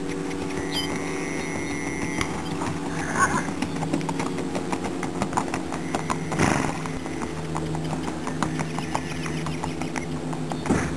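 Hoofbeats of a ridden Tennessee Walking Horse on a dirt track: an even run of clip-clops starting a few seconds in, over a steady low hum.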